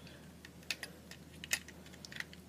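Small, sharp clicks and taps of LEGO plastic, about half a dozen, as a minifigure is fitted into the cockpit of a LEGO jet, over a faint steady hum.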